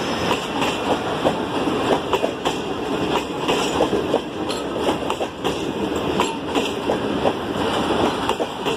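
Pakistan Railways Green Line Express passenger coaches rolling past, their wheels clattering over the rail joints in a steady run of clicks and knocks over the running noise.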